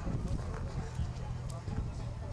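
Fiat 126p's two-cylinder air-cooled engine, somewhat modified, idling at a standstill with a low, rapid pulsing.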